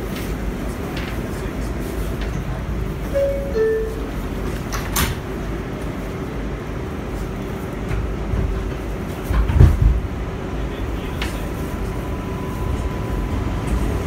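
Inside an R142A subway car: two short falling chime tones about three seconds in, then the car pulling out with a steady motor hum over a low rumble. There is a sharp click in the middle and a louder low surge a little later.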